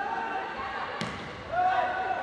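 A single sharp smack of a volleyball being struck about a second in, over sustained voices carrying through the arena.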